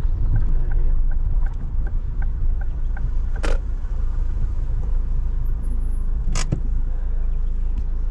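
A car's engine and road noise heard from inside the moving car: a steady low rumble as it drives slowly, with two sharp clicks, about three and a half seconds in and again near six and a half seconds.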